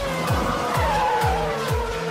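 Programme closing jingle: electronic music with a steady kick drum about twice a second, overlaid with a race-car sound effect whose pitch glides downward and then levels off.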